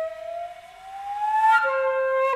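Solo flute holding a note and bending it slowly upward in a long glide, then moving to a new, lower note about one and a half seconds in.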